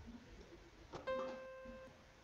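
A single C note struck on a MIDI keyboard playing an acoustic grand piano sound, starting about a second in and fading for just under a second before it is released.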